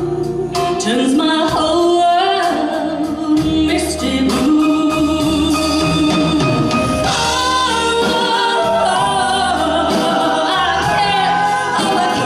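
A woman singing live into a handheld microphone, backed by a band with guitar. Near the end she holds a note with vibrato.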